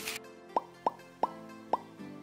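Four quick cartoon-style pop sound effects, each a short upward blip, coming closer and closer together over soft background music.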